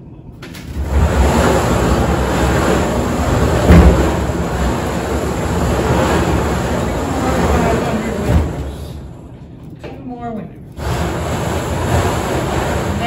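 Wooden raffle drum being turned, paper tickets tumbling inside in a steady rolling rustle for about eight seconds, with one louder knock partway through, then stopping. Near the end, hands rummage through the tickets to draw one.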